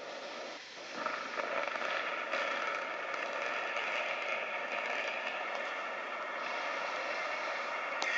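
A 13-story building collapsing in a demolition implosion: a steady rumbling roar of falling structure and debris that swells about a second in and holds. It is heard thin, with no deep bass, from a TV speaker recorded on a phone.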